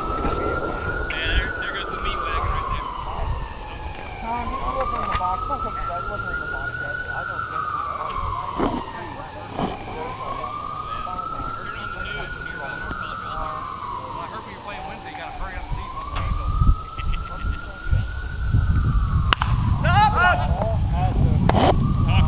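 A siren wailing in the distance, its pitch rising and falling in slow cycles about every five and a half seconds. Near the end a single sharp crack of a bat hitting the ball cuts through it.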